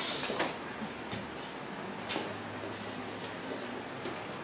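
Quiet room tone: a steady hiss and faint low hum, with a few faint clicks or taps.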